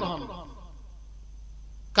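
A pause in a man's amplified sermon. His last words fade into the echo of the loudspeakers over about half a second, then a faint steady hum from the sound system, and his voice comes back in at the very end.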